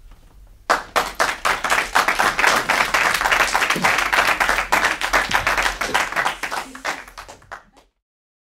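Applause from a small audience, with individual claps distinct, starting about a second in and dying away near the end.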